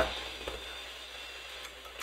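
A couple of faint computer keyboard key clicks over a steady background hiss.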